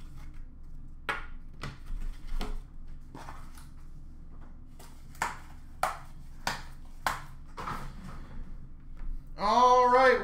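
Trading cards in clear plastic holders and their boxes being handled on a glass counter: a string of about ten short clicks and taps, irregularly spaced, over a faint steady hum. A man's voice starts shortly before the end.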